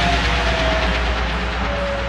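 Electronic dance music effect in a trance mix: a noise wash fades away after a crash hit, while one tone slides slowly downward over a steady low bass hum.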